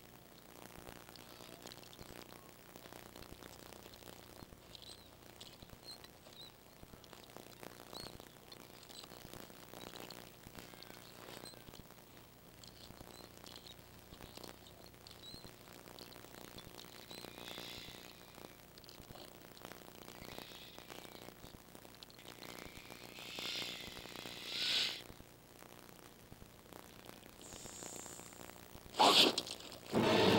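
Quiet outdoor ambience with faint, scattered bird chirps. A sudden loud burst of noise comes a second before the end.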